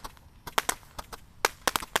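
Basoka Magic Ball 200-shot roman candle cake firing: a string of sharp pops at uneven intervals, about half a dozen in two seconds, several of them close together near the end.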